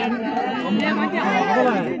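Several people talking over one another nearby: spectators' chatter, with no single clear voice.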